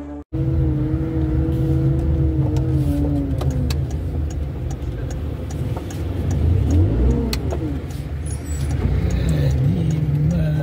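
Car engine and road traffic noise, a steady low rumble. An engine note falls away over the first few seconds, and another rises and falls about seven seconds in.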